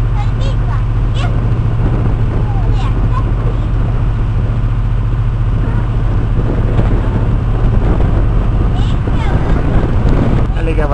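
A boat's engine running with a steady low drone, heard on board, with faint voices over it.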